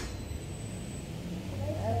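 Steady low machine hum of the indoor revolving carpet ski slope running, growing a little stronger about halfway through, with a faint high whine in the first second. A woman's voice starts near the end.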